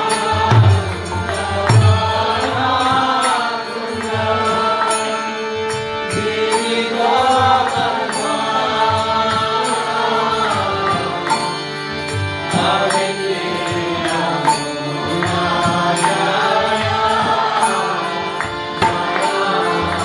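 Kirtan: a man singing a devotional chant over a harmonium's sustained reed chords, with a mridanga drum beating the rhythm.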